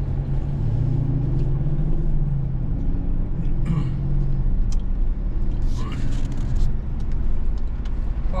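Steady engine drone and road noise heard from inside a moving truck's cab, the engine's pitch rising a little about a second in. A few brief, higher sounds break in near the middle.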